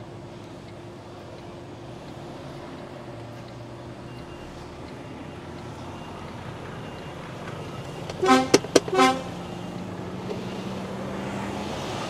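HGV's diesel engine idling, heard from inside the cab, a steady hum that grows slightly louder toward the end. About eight seconds in, a vehicle horn gives a few short, loud toots.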